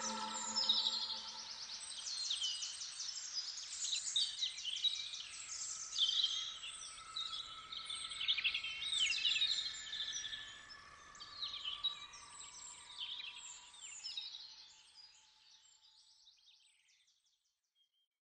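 Birds chirping and trilling, many short calls overlapping, fading out gradually to silence near the end.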